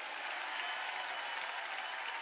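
Congregation applauding, a steady even patter of many hands, much quieter than the preaching around it.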